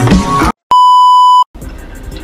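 Background music stops abruptly about half a second in, and after a brief gap a loud, steady, high electronic beep sounds for under a second and cuts off sharply: an edited-in bleep tone. Quieter room sound follows.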